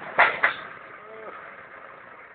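Manitou telehandler engine running steadily, heard from the cab, with two sharp knocks about a fifth of a second and half a second in.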